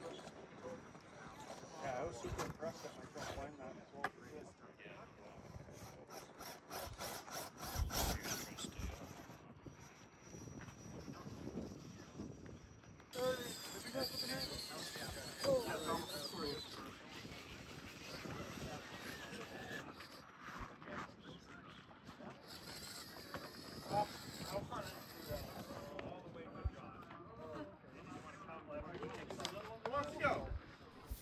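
Electric drive motor of a 2.2 motor-on-axle RC rock crawler whining as it climbs granite boulders, the high whine coming and going in stretches of a few seconds, with scattered clicks and scrapes from the tires and chassis on the rock. Indistinct voices of people nearby run underneath.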